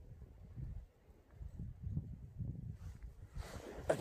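Camera handling noise: an irregular low rumble with soft bumps as the camera is moved and set up, and a brief rustle near the end.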